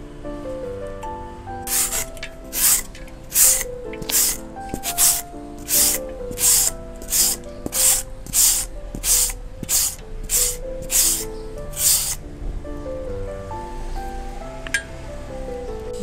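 Rasping scrape strokes of a hand-held julienne shredder drawn down a firm green mango, about two a second, stopping about twelve seconds in. Background music plays throughout.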